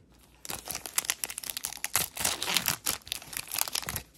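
Foil wrapper of a Topps Chrome trading card pack crinkling as it is torn open by hand. The dense crackling starts about half a second in and stops just before the end.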